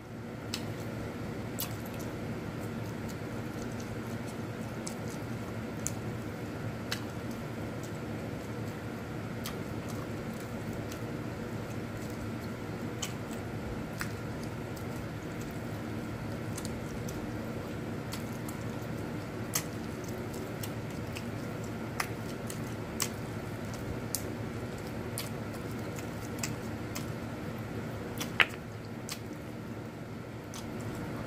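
Wet squishing and smacking of chicken wings in a thick sauce being eaten by hand, with scattered short clicks and one sharper click near the end, over a steady background hum.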